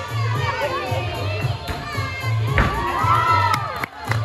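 Young girls cheering and shouting over floor-exercise music with a steady beat. The shouts swell in the second half, with a single thump about two and a half seconds in.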